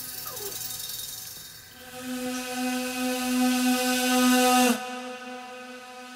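Ambient electronic music: a sustained synthesizer drone swells and grows louder, then its high end cuts off suddenly with a brief downward pitch bend about three quarters of the way in, leaving a quieter held tone. Short falling glides sound near the start.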